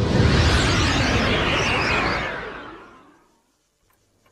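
A rushing whoosh sound effect, loud from the start, with wavering high tones over it, dying away to silence after about three seconds.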